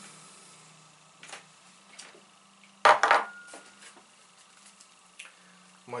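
Tabletop handling noises: a few light clicks and taps, and one loud sharp knock about three seconds in, as a small glass bowl is set down, with a brief faint ring after it.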